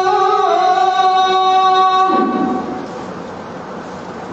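A voice holding one long chanted note in a recitation, stepping slightly down in pitch about half a second in and ending about two seconds in, followed by a softer stretch of room noise.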